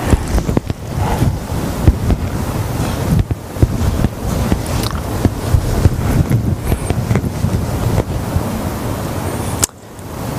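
Microphone handling and rubbing noise: a loud, low rumbling rustle with many crackles and knocks as the wearer moves. It cuts off abruptly near the end.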